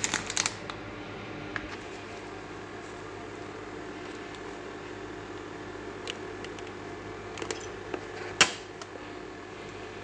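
Senseo electric milk frother running with a steady hum. Over it, crinkling of a foil coffee-pad bag at the start, a few light clicks from handling the Senseo pad machine, and one sharp click about eight seconds in as its lid is shut.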